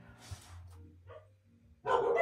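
A mostly quiet stretch with a faint short whine about a second in, then a dog bark starting suddenly near the end.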